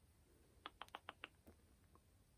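Near silence with a quick run of five or six faint clicks a little before the middle, as a yarn needle is worked against and through a button's holes on a knitted piece.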